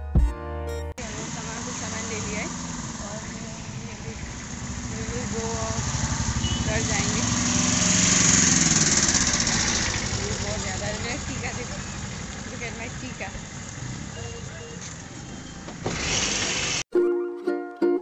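A motor vehicle's engine running amid street noise and wind, growing louder to a peak about halfway through and then easing off, with faint voices in the background.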